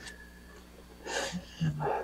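A man's audible breath about a second in, followed by a brief low voiced sound near the end, over a faint steady room hum.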